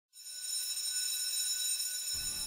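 Steady, high-pitched electronic tone, alarm-like, starting a moment in and holding without a break.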